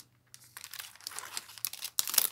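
Clear plastic bag crinkling as a card and paper cutouts are slid into it by hand. Quiet at first, the crackling starts about half a second in, grows busier, and ends in a sharp loud crackle.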